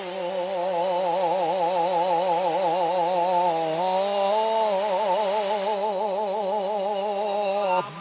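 A reversed recording of a man's voice holding one long sung note with wide vibrato, the pitch stepping up slightly a little past halfway and cutting off just before the end.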